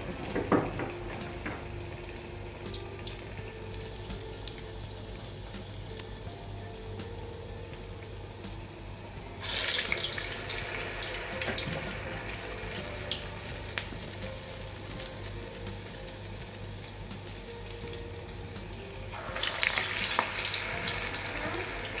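Urad dal vada deep-frying in hot oil in an iron kadai: a steady sizzle with scattered pops, which swells sharply about halfway through and again near the end.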